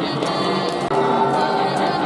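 Many voices singing together in unison with instruments playing along: a stadium cheering section's fight song.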